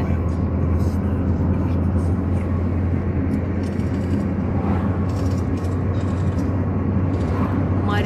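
Steady low road rumble inside a Nissan car's cabin at highway speed: engine and tyre noise with no change in level.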